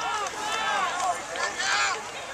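Raised voices shouting and calling out across the field, high-pitched and without clear words, rising in two swells.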